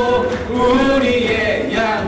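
Church worship team singing a praise song, several voices together holding and gliding through the melody over instrumental backing.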